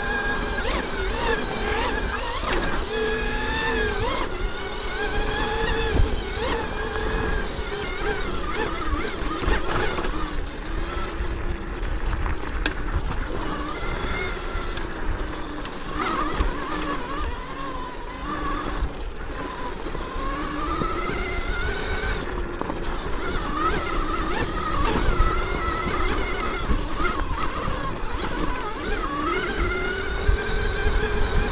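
Electric motor of a Throne Srpnt 72-volt e-bike whining under way, its pitch rising and falling with speed, over a steady low rumble of tyres on dirt. A few sharp clicks and knocks break through.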